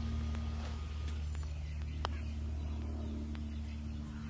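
Steady low hum with a single sharp click about two seconds in: a putter striking a golf ball on a practice green.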